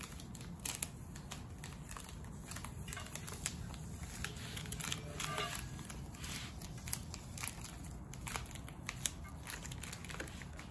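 Blue painter's tape being peeled off a wheel barrel and crumpled by hand: a run of small crackles and short tearing rips.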